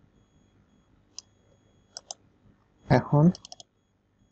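Sharp, isolated computer mouse and keyboard clicks: one about a second in, two close together around two seconds, then a quick run of several near the end. A short spoken sound comes just before the last clicks.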